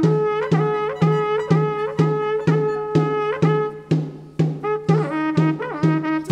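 Andean carnival music: a wind instrument with a horn bell plays a melody with slides and ornaments over a stick-beaten drum keeping an even beat about twice a second.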